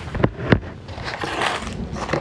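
A diamond painting canvas and a plastic container being handled on a table: two sharp knocks in the first half second, then crinkly rustling of the canvas sheet about a second in.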